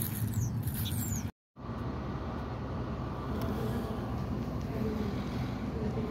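Outdoor traffic noise with a low rumble, cut off abruptly about a second and a half in. Then the steady background noise of a fast-food restaurant's dining room.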